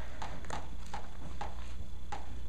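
Chalk on a chalkboard as a word is written: a series of short sharp taps, two or three a second, as each stroke strikes the board.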